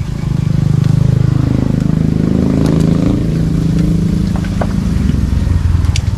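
A small engine running nearby, loud and low, its pitch rising and falling about two to three seconds in.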